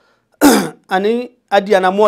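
A man clears his throat once, about half a second in, then goes back to talking.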